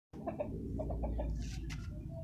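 Bangkok gamecock rooster clucking, a quick run of short clucks in the first second or so, with a brief rustle near the end.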